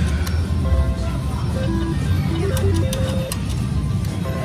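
Casino floor sound: a steady low hum with short electronic slot-machine jingle tones, and sharp clicks as a three-reel slot machine's reels spin and stop.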